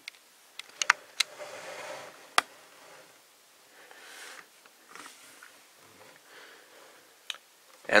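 A few sharp clicks and taps of hard plastic toy-robot parts being handled: a quick pair about a second in, the loudest about two and a half seconds in, and one more near the end, with faint rustling between.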